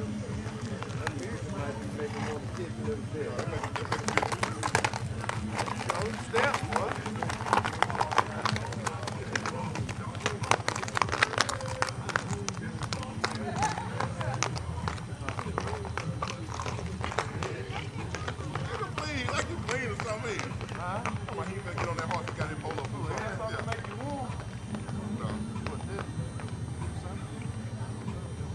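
Horses' hooves clopping on packed dirt as several ridden horses walk past, with a steady low hum underneath and the chatter of people talking. The hoof knocks come thickest in the first half.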